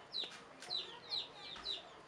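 Chickens calling, faintly: a string of short, high, falling peeps, about two a second.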